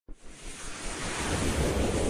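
A rushing, wind-like whoosh sound effect that swells steadily louder.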